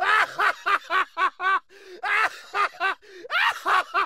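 High-pitched laughter: rapid 'ha-ha-ha' syllables, about five a second, in three runs broken by short pauses.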